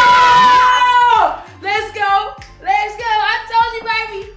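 A woman's long, loud excited shriek held for about a second, followed by short melodic voice phrases that sound sung rather than spoken.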